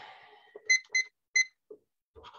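Three short electronic beeps on one steady pitch, about a third of a second apart, with a few faint clicks around them.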